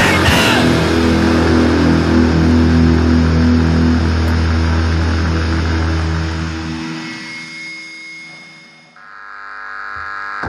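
Powerviolence band's distorted guitars and bass letting a final chord ring out, fading slowly over several seconds as a song ends. Near the end a new high, steady ringing tone swells up out of the quiet.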